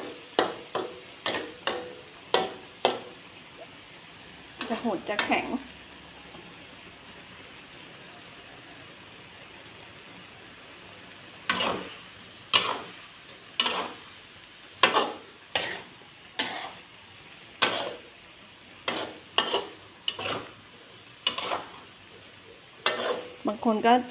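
Metal spatula scraping and knocking against a steel wok during a stir-fry of snow peas and shrimp, over a steady low sizzle. The strokes come in a quick run at first, stop for several seconds leaving only the sizzle, then return about once a second.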